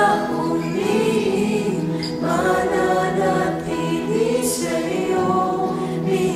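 A mixed choir of women's and men's voices singing a slow worship song in long, held phrases, with a short break between phrases about two seconds in.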